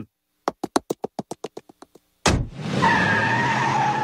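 Cartoon sound effects: a quick run of about a dozen footstep taps, then, about two seconds in, a sudden loud tyre screech with car noise under it, held as the car peels away.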